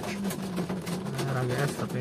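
A man's low voice inside a car, with rain tapping steadily on the car body.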